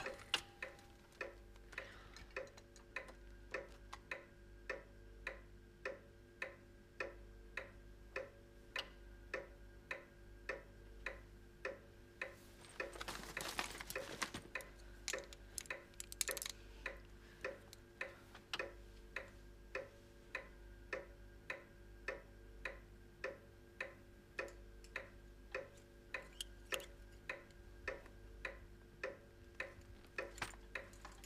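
A clock ticking steadily, about two ticks a second, with a brief rustle about halfway through.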